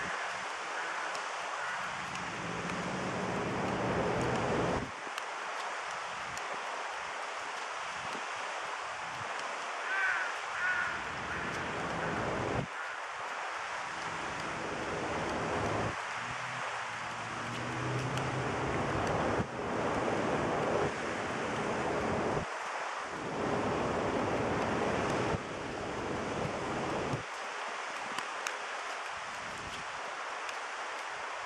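Wind blowing on the camera microphone outdoors, a steady rushing noise that gusts and drops abruptly every few seconds, with a few short high chirps about a third of the way in.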